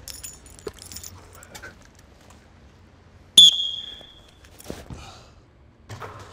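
A single bright metallic ding with a sharp attack about three and a half seconds in, ringing and fading over about a second. Before it come faint clicks and rustling, and a small knock follows it.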